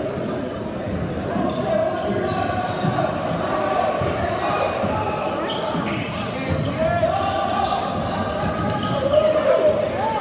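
A basketball dribbling on a hardwood gym floor, with sneakers squeaking, over the chatter and calls of spectators, all echoing in the gym.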